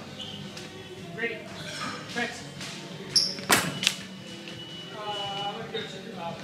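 Indistinct voices and music in a large hall, with two sharp knocks about three and a half seconds in, just after a brief high tone.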